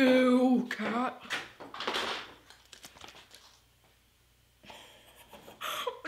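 A boy's wordless vocal sounds: a loud 'oh' held at one steady pitch at the start, then a few shorter cries that die away. A soft rustle follows near the end.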